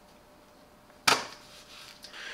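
A computer mouse set down on a mouse pad: one short, sharp knock about a second in that dies away quickly.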